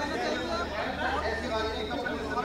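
Background chatter: several people talking at once, with no single clear voice, over a low steady hum.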